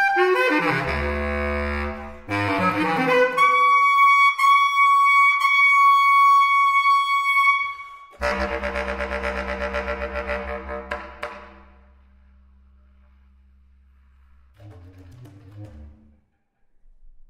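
Solo bass clarinet playing contemporary music: quick leaping notes across the low and middle register, then a long high note held for about four seconds, then a loud low note about eight seconds in that fades away over several seconds, and a soft low phrase near the end.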